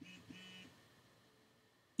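A faint, brief human voice during the first second, then near silence.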